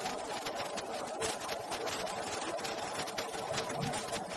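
Soundtrack of a dialogue-free short film played over a video call: a steady, dense, rapid crackling clatter with no speech.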